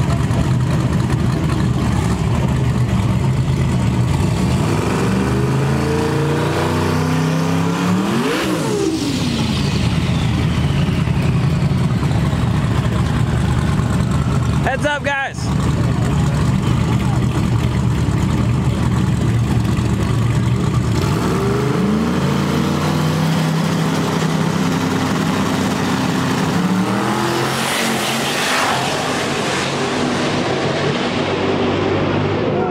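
Loud drag-car engines running and revving at the starting line. Their pitch climbs in steps and sweeps up and down twice, with a brief dropout about halfway through.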